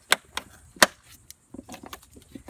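Sharp plastic clicks as the clips of a 2015 Maserati Ghibli's engine air box cover are snapped into place: a few separate snaps, the loudest a little under a second in.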